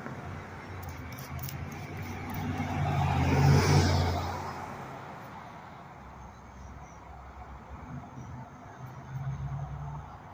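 A car passing along the street: engine hum and tyre noise swell to a peak about three and a half seconds in and fade by five seconds. A quieter low hum of another vehicle rises near the end.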